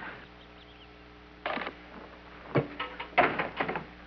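Steady low hum of an old television soundtrack, broken by a few short knocks and scuffs about one and a half, two and a half and three seconds in.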